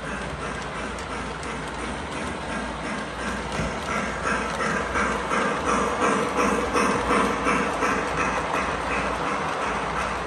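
O gauge three-rail model freight train rolling on plastic-roadbed track, its wheels and trucks making a steady, rhythmic mechanical clatter. The clatter gets louder about halfway through as the cars come close.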